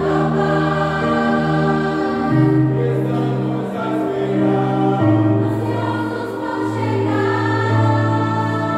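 A group of young mixed voices singing a song together, holding long notes that change every second or two.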